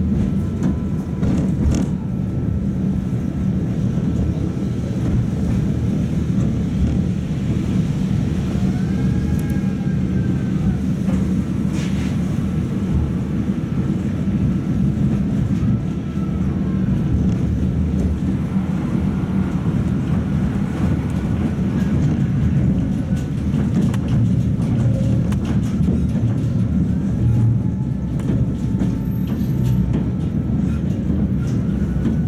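Cabin noise of a Tatra T3 tram under way: a steady low rumble of the running gear on the rails, with faint whines gliding up and down and a sharp click about twelve seconds in.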